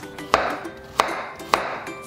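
A kitchen knife chopping through a carrot onto a wooden cutting board: three sharp knocks about two-thirds of a second apart, over soft background music.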